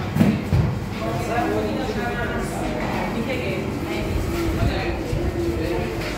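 Indistinct talking that the recogniser did not catch, with two dull low thumps in the first second.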